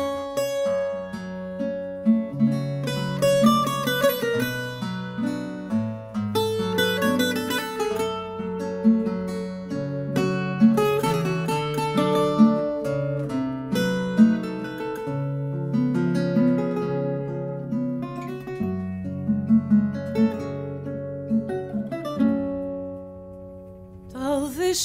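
Instrumental acoustic guitar music: a plucked melody over picked bass notes, fading out near the end.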